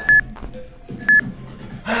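Workout interval timer counting down with two short high beeps a second apart, over a man's hard breathing from exertion, with a loud breath near the end.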